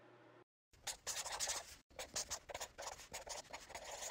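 Writing sound effect: a pen scratching across paper in a run of short, uneven strokes, starting just under a second in.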